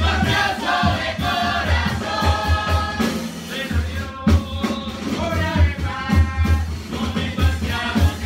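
A murga chorus of children and teenagers singing together in unison, with a drum beating steadily under the voices.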